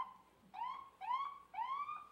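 A siren sounding in a run of short rising whoops, four in quick succession at about two a second.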